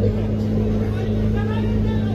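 A steady low hum with a noisy background, with faint voices in the distance.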